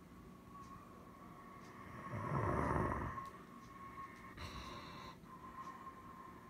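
Faint, steady drone and thin whine of a distant Airbus A320neo-family airliner's jet engines as it climbs out. About two seconds in a brief louder rush of noise swells and fades, and a short high tone sounds a little past four seconds.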